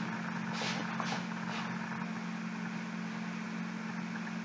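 Handheld whiteboard eraser wiping across the board: three soft swishes about half a second apart in the first two seconds, over a steady low hum.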